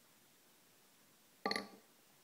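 Near silence, then about one and a half seconds in, one short mouth sound from the drinker just after a sip of beer.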